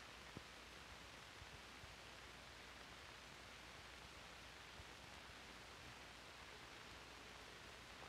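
Near silence: only a faint steady hiss of the soundtrack's background noise, with a tiny click about half a second in.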